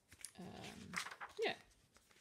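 Pages of a printed journal being turned by hand, with light paper rustles and flicks between a hesitant spoken "um" and "yeah".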